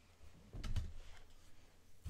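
Quiet room tone with a faint short click about two-thirds of a second in.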